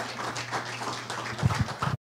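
Room noise after a press conference ends: irregular clicks and rustles over a steady low hum, with a few dull low thumps about one and a half seconds in.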